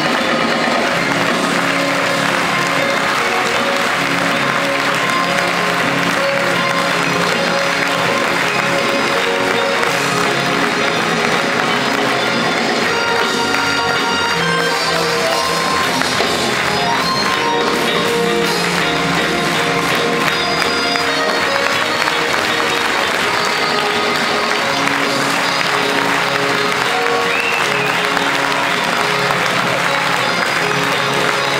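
A live band with double bass and cello playing while the audience applauds and claps along.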